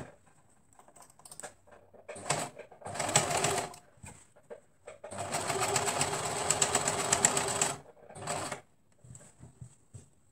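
Domestic electric sewing machine stitching a hem in stop-start runs. There are two short bursts in the first four seconds, then one longer run of nearly three seconds from about five seconds in, and a brief final burst a little after eight seconds.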